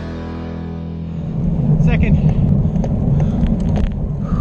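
Background music fading out in the first second, then loud wind buffeting on a bicycle-mounted camera's microphone as the bike rides along, with a few short high chirps about two seconds in.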